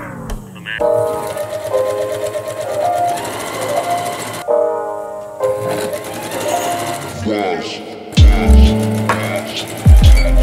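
A home electric sewing machine stitching a seam in stretches, under electronic music with deep bass hits near the end.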